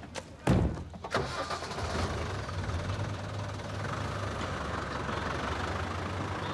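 A heavy thud about half a second in and a knock about a second in, then the engine of an old canvas-topped utility vehicle running steadily at idle.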